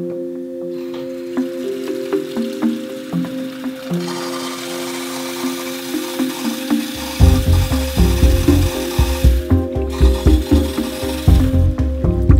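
Water running from a kitchen tap into a saucepan, a steady hiss that grows louder midway and stops near the end. Background music plays throughout, with a heavy beat coming in about seven seconds in and becoming the loudest sound.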